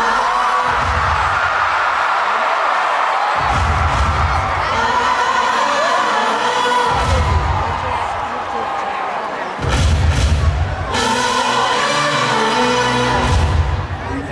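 Live stage-musical number played loud through an arena sound system: a band with a heavy low beat that comes back every few seconds, with voices singing over it and a crowd cheering beneath.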